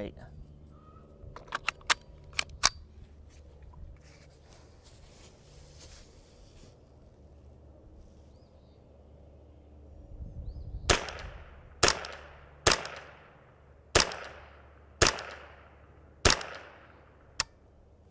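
Kidd 10/22 semi-automatic rifle firing .22 LR Norma Tac-22: six shots about a second apart, each a sharp crack with a short fading echo, then one shorter, sharper crack near the end. Early on, a few light clicks of the magazine and action being handled.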